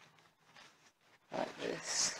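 The first second or so is very quiet. Then, about a second and a half in, a person gives a short grunt of effort while pushing a foot into a foam-lined walking boot, followed by a breath.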